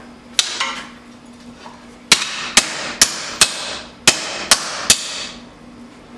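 Hand hammer striking red-hot leaf-spring steel on an anvil. Two lighter blows come first, then a run of four sharp, ringing strikes about half a second apart, a short pause, and three more.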